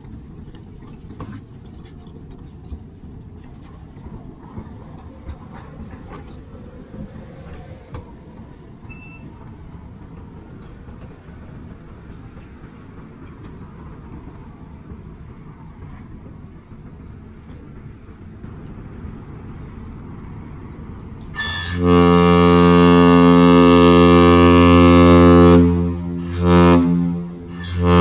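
Low rumble with scattered cracks as the Mesabi Miner, a 1,000-foot lake freighter, pushes through broken ice. About 21 seconds in, the ship's horn sounds one loud, steady blast lasting about four seconds: the long blast that opens a captain's salute (one long, two short).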